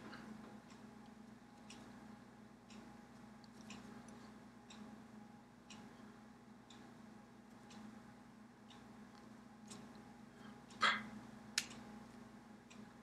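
Faint ticking, one tick about every second, typical of a clock, over a steady low hum of room tone. Near the end a brief louder scuffing noise and a sharper click stand out.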